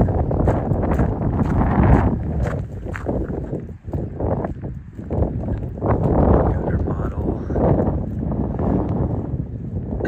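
Wind buffeting the camera microphone in uneven gusts, with footsteps on pavement.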